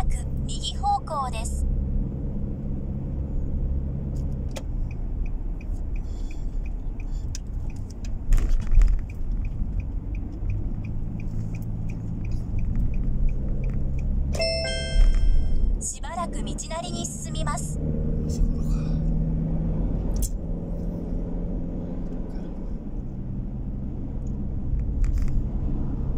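Steady engine and road rumble inside a moving car's cabin. A car navigation unit chimes and gives a brief synthesized voice prompt right at the start and again about 15 seconds in. Between them runs a light, regular ticking, the turn-signal relay.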